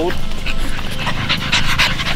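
French bulldog puppies panting as they play, with a run of quick breaths in the second half.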